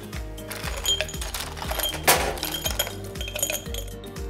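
Ice cubes dropped from a scoop clinking into a tall highball glass, a series of short ringing clinks with one louder rattle about two seconds in. Background music with a steady beat plays underneath.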